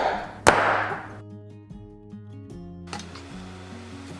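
A sharp knock about half a second in as a hand strikes a small cast clay salt shaker on a wooden table, followed by a laugh. Soft background music with held notes runs through the rest.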